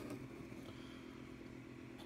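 Faint steady low hum of room background, with one light click at the start.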